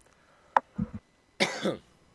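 A sharp click and a couple of low thumps, then a man's short cough at a studio microphone.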